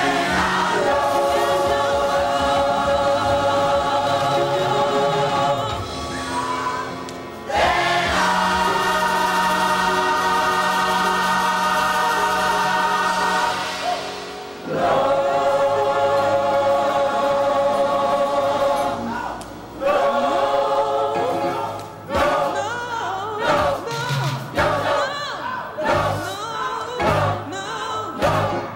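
Large gospel choir singing three long, held chords of about six seconds each, with short breaks between them, then shorter, choppier phrases in the last several seconds.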